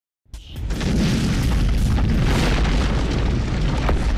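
Intro sound effect: a deep boom that starts suddenly a moment in and carries on as a dense, steady low rumble with scattered crackles.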